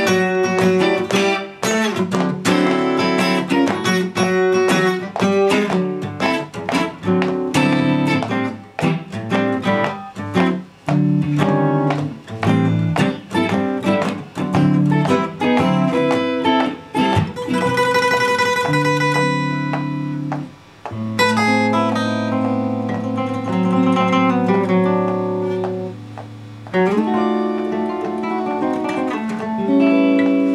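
Instrumental guitar duet: an electric Fender Stratocaster and a steel-string acoustic guitar played together. It opens with fast picked runs and moves to longer held, ringing chords a bit past halfway through, then busier playing again near the end.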